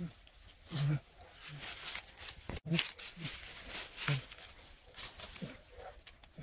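A man's voice making short grunts and murmurs, about six of them spread over several seconds, with no clear words.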